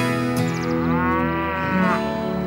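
A cow moos once in a long call that starts about half a second in, rising and then falling away near the end, over background music.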